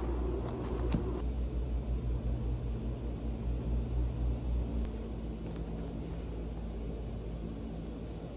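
A low, steady rumble with a hum in it, heavier for the first five seconds and then easing off. A few faint clicks and rustles near the start as a book is handled on the table.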